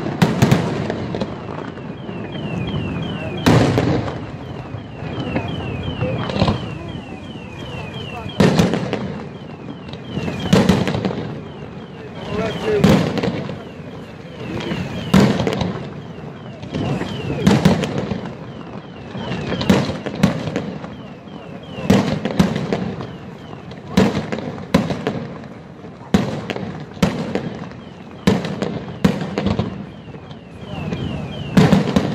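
Aerial firework shells bursting over water, one loud bang about every two seconds, each trailing off before the next. Between the bangs a fast repeating high chirping comes and goes.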